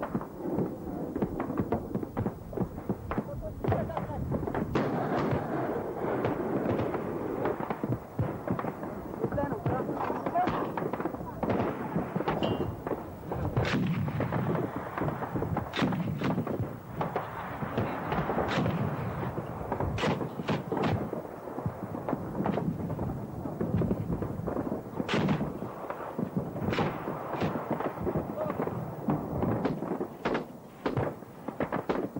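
Battlefield gunfire: a dense, continuous stream of rifle and machine-gun shots mixed with heavier artillery booms, with sharper individual cracks standing out at intervals.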